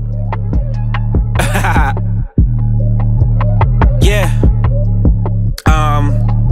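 Hip-hop beat: a deep, steady bass with sharp ticks at a steady pulse, fading in, with short bending vocal-like snippets about one and a half and four seconds in. The beat cuts out for a moment a little past two seconds and again near the end.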